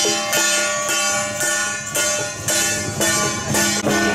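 Temple procession percussion music: metallic, ringing strikes about twice a second with a drum, over a steady low tone and a short repeating pitched figure.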